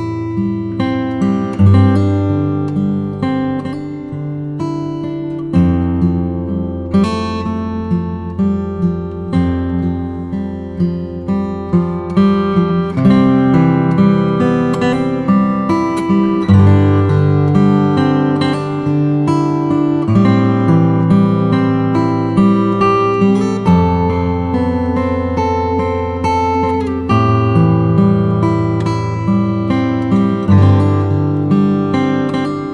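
Background music: acoustic guitar strumming chords, the chord changing every few seconds.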